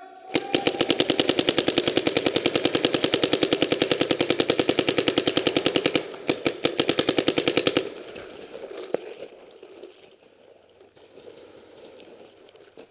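Paintball marker firing a rapid stream of shots, about ten a second, for more than five seconds. Two short bursts follow, and it stops about eight seconds in.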